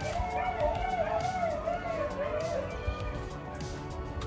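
Dogs whining in a long, wavering whine that rises and falls and dies away a little past halfway: the dogs are eager to go along.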